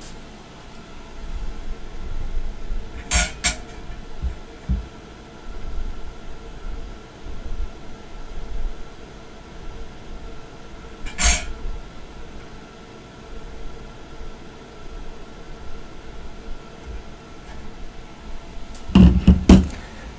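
Handling noise from digital calipers being set against a laser-marked metal plate, with sharp clicks of metal on metal: two close together about three seconds in and one about eleven seconds in. A steady hum runs underneath, and a louder knock comes near the end.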